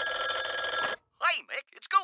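A telephone bell ringing steadily, cut off suddenly about halfway through, followed after a brief silence by a voice starting to talk.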